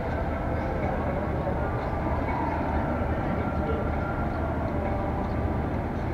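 Train running on the tracks, a steady low rumble with no sudden events.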